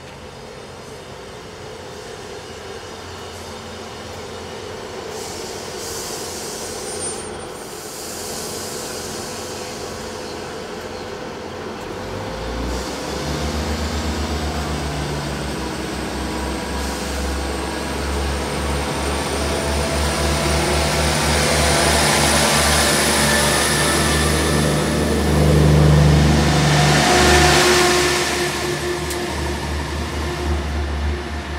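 A diesel multiple unit train at the platform, its rail and engine noise building. About twelve seconds in, its underfloor diesel engines open up with a low, throbbing drone and a rising whine as it pulls away. It is loudest near the end as the coaches accelerate past.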